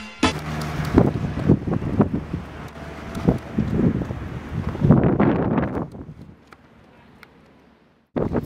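Wind buffeting a camera microphone outdoors, with indistinct voices in the background. The sound drops to a faint hum about six seconds in.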